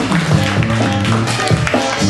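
Loud breakdance battle music with a bass line and a steady drum beat.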